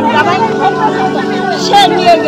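Women talking in Bengali, more than one voice at once, over a steady low hum.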